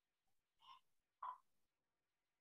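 Near silence, broken by two brief faint sounds about half a second apart near the middle.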